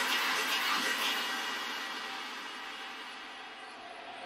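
Breakdown in an electronic dance remix: a hiss-like wash of noise with no beat or bass, slowly fading away.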